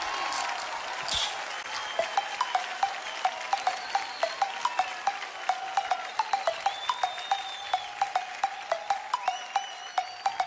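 Music interlude between two songs of a lofi Bollywood mashup: a held note with faint gliding tones above it, under a crackly haze of frequent sharp clicks.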